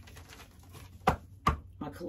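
Two sharp taps of tarot cards on a tabletop, about a second in and under half a second apart.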